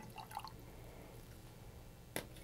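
Soy sauce poured from a small glass dish into a glass mason jar: a faint, brief trickle in the first half second, then quiet room tone.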